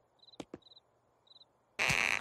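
Crickets chirping in short, evenly spaced bursts, with two faint clicks about half a second in. Near the end a sudden loud scraping noise starts as the heavy statue-like figure is dragged.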